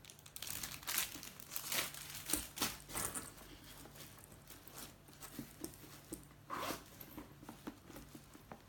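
Clear plastic wrapping crinkling as hands handle a new leather handbag and reach inside it: irregular rustles, busiest in the first three seconds, with one louder rustle later on.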